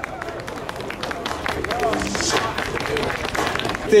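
Low murmur of a small crowd talking in the open air, crossed by a quick run of irregular clicks and knocks.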